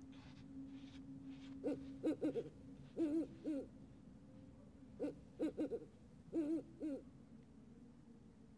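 Owl hooting: a series of short pitched hoots in bunches of one to three, several bunches spread over a few seconds.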